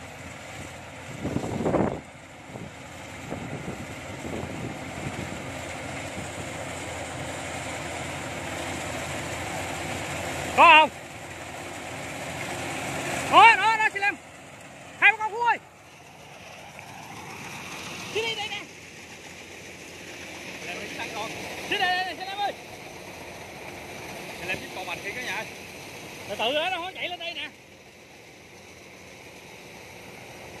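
Combine harvester cutting rice, its engine noise steady and growing louder over the first half, then dropping away. Several loud, short shouts of people ring out over it, the loudest around the middle.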